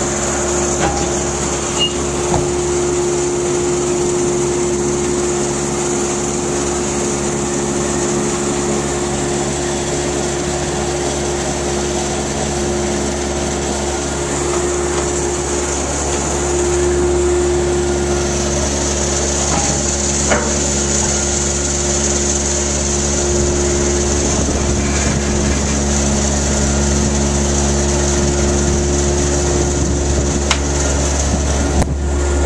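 Belt conveyor running: a steady mechanical hum with a high hiss over it, and a couple of faint clicks, one about two seconds in and one about twenty seconds in.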